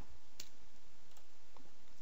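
Computer mouse and keyboard clicks: one sharp click about half a second in, then a couple of fainter clicks, over steady background hiss.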